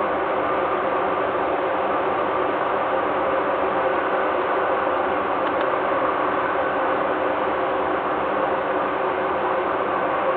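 Steady mechanical drone of industrial plant machinery, even and unbroken, with a faint hum running through it.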